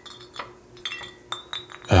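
Glass bottles clinking against each other in a series of light taps, each with a brief ringing tone, as they are sorted through.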